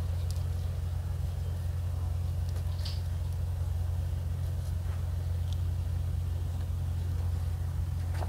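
A steady low hum runs throughout, with a few faint short scratches as a felt-tip marker writes on the plastic pot wrapping.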